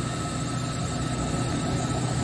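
Heavy construction equipment engine running steadily: a constant low hum with a faint high whine over a noisy rush.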